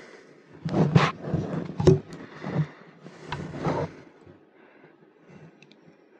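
Metal clicks and scraping as the steel expansion-slot covers (tabs) at the back of a desktop PC case are worked at by hand to free a slot for a graphics card, with two sharp clicks about a second apart.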